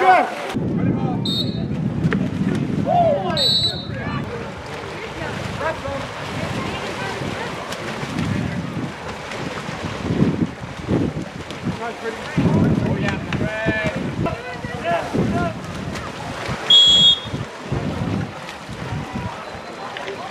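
Three short referee whistle blasts: faint about a second in, another at about three and a half seconds, and the loudest near the end. They sound over scattered spectators' voices and wind on the microphone.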